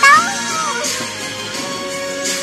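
A young child's high-pitched sung note that swoops up and then falls away in the first second, over backing music with long held notes.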